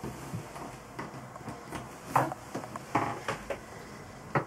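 A few short knocks and clunks, the loudest about two seconds in and two more around three seconds.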